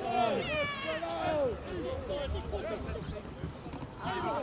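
Several voices shouting at once during a rugby match, overlapping high calls from players and onlookers, with no clear words. They are loudest in the first second or so and die down toward the end.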